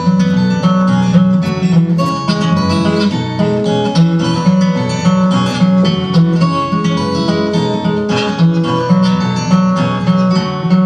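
Acoustic guitar played in a steady, strummed and picked instrumental passage, its chords ringing on continuously.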